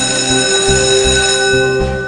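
Bonus-trigger chime from the White Rabbit online slot game: a bright, bell-like chord that starts suddenly and rings over the game's music, fading near the end. It signals that the free-spins feature has been triggered.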